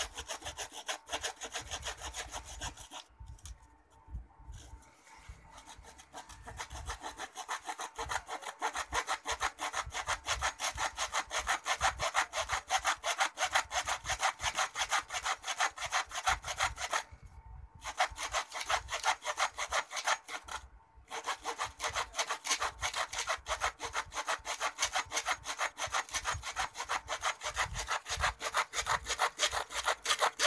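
A hand-held blade sawing back and forth through a plaster arm cast in quick, even scraping strokes. The sawing pauses briefly about three seconds in, and again twice in the second half.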